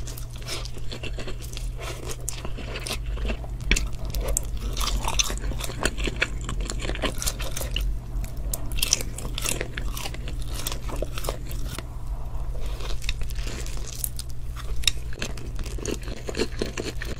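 Close-miked eating: black spicy instant noodles being sucked up and chewed, with crunchy bites into sauce-glazed fried chicken in the middle, a dense run of wet clicks and crackles over a steady low hum.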